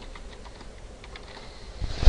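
Computer keyboard typing: a run of light, quick keystrokes as a short phrase is typed, followed by a louder low bump right at the end.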